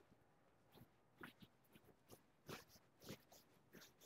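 Near silence with a few faint, irregular soft taps: footsteps on a tile floor while walking through the house.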